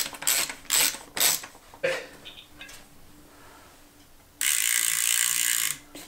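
Mountain bike rear hub's freehub ratchet clicking in short bursts, about three a second, as the rear wheel is turned by hand, stopping about a second and a half in. Near the end comes a louder steady high buzz lasting about a second and a half that cuts off suddenly.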